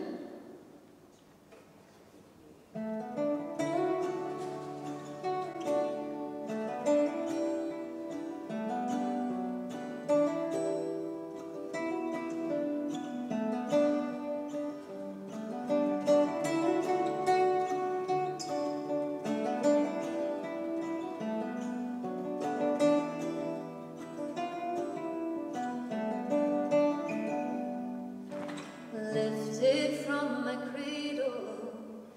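A throat clear, then two acoustic guitars playing the instrumental introduction to a folk song from about three seconds in. A woman's voice starts singing over them just before the end.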